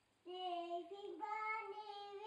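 A young child singing, holding a few long, steady notes; the singing starts a moment after a brief silence.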